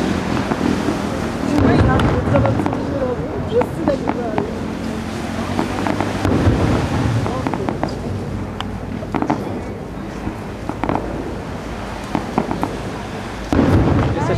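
Aerial firework shells bursting in the sky, a string of sharp bangs at irregular intervals, some single and some in quick pairs.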